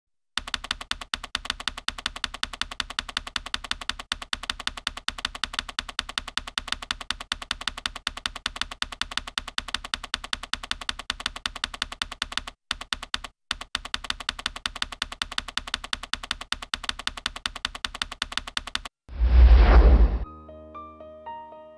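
Typewriter key-click sound effect, rapid and evenly spaced, typing out on-screen text a character at a time, with two brief breaks a little past the middle. Near the end, a loud swelling whoosh with a deep rumble, the loudest sound here, cuts in.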